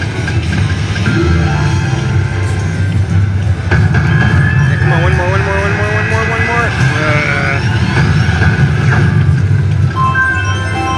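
Ainsworth Ultimate Fortune Firestorm slot machine playing its electronic game sounds as the reels spin. About halfway through, rising tones play as three Firestorm symbols land and the respin feature starts. Underneath are casino background chatter and a steady low hum.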